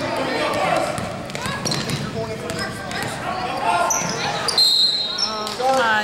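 Basketball being dribbled on a hardwood gym floor, amid shouting and chatter from spectators echoing in the hall. A few sharp, high-pitched squeaks come about four and five seconds in.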